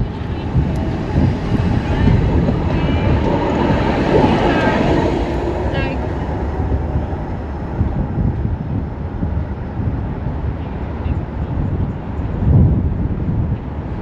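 Wind buffeting the microphone over a steady low rumble of city traffic, with a tram passing close by about four seconds in and passers-by talking briefly.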